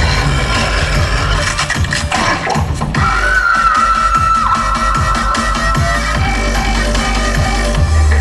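Loud electronic dance music with a heavy, steady bass beat, played over an outdoor show's sound system. A long held high note comes in about three seconds in and holds for a few seconds.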